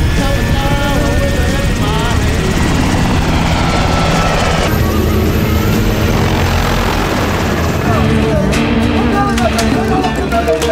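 Several Black Hawk military helicopters running, rotors and turbines loud as they lift off and fly low in formation, with film-score music mixed over them.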